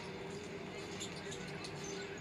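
Basketball game broadcast playing low: steady arena crowd noise with the faint bounce of a basketball and short squeaks of play.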